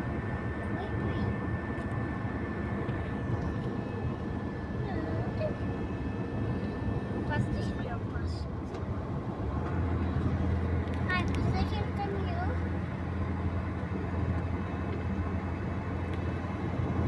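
Car engine and tyre noise heard from inside the cabin while driving on smooth fresh asphalt: a steady hum whose low rumble grows stronger about ten seconds in.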